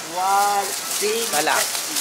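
Thin plastic produce bag crinkling and rustling as tomatoes are put into it, under a drawn-out voice and a spoken word.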